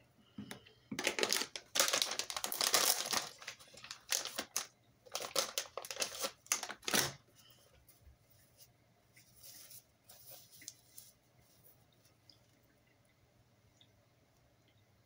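Paper tissue being pulled out and handled, crinkling and rustling in loud bursts for the first seven seconds, then fainter rustles.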